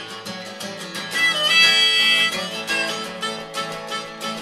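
Acoustic guitar strummed in a country song's instrumental gap, with a held high melody line sounding over it for about a second near the middle.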